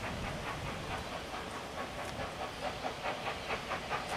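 SECR P Class 0-6-0 tank locomotive No.323 "Bluebell" working steam: an even, quick beat of exhaust chuffs with steam hiss, about five beats a second, growing more distinct in the second half.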